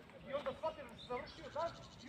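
Faint, high-pitched voices heard from a distance, in short broken phrases.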